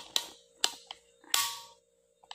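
Handling noise close to the microphone: sharp clicks and short scuffs, about two a second, with a longer, louder scuff about one and a half seconds in, over a steady low hum.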